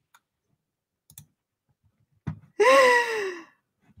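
Near silence, then a faint click and a woman's single short vocal sound, falling steadily in pitch, about two and a half seconds in.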